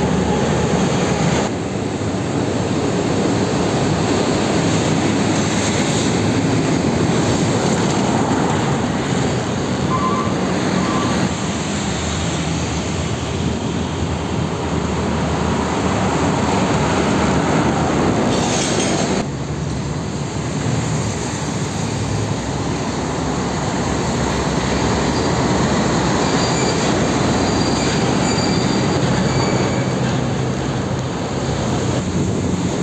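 Heavy diesel trucks passing at road speed: engines running and tyres rumbling in dense traffic noise. The sound changes abruptly three times.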